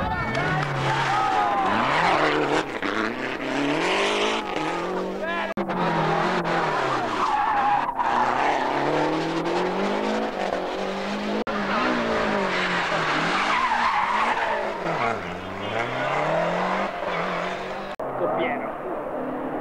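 Lancia Delta Group A rally car's turbocharged four-cylinder engine revving hard at full load, its pitch climbing and dropping again and again through gear changes and lifts, over tyre and road noise.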